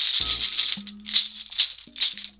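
A rattle of dried Nigerian ekpiri seed pods being shaken, a really harsh and loud cutting sound. It starts as a continuous rattle and breaks into three separate sharp shakes in the second half.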